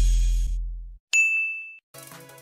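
The tail of the background music fades out, then a single bright ding sound effect starts sharply about a second in and rings on one high tone for under a second.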